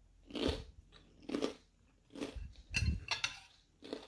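Table knife sawing through crisp toasted bread under a fried egg on a china plate, making a crunch with each stroke, about six crunches in all.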